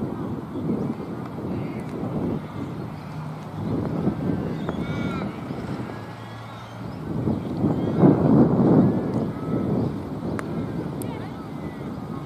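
Wind buffeting the microphone in gusts, strongest about eight seconds in. Faint voices and a few faint bird chirps sound through it.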